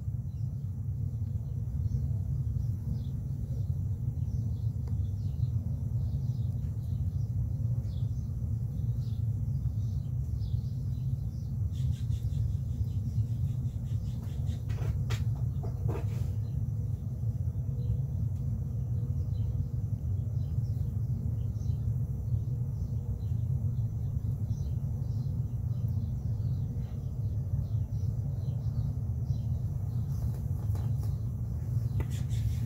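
Steady low rumble of outdoor background noise, with faint bird chirps scattered through it and a few brief clicks around the middle.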